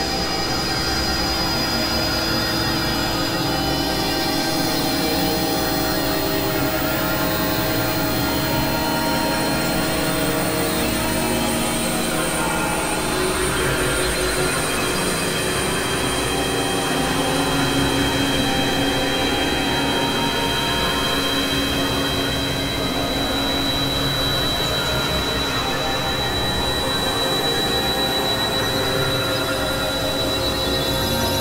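Experimental synthesizer drone music: a dense, steady layer of many held tones, some of them shrill, over a noisy wash. The layers shift slowly, and a high held tone comes to the fore past the middle.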